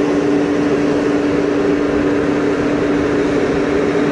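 A generator running with a very loud, steady hum, one constant low drone with no change in speed.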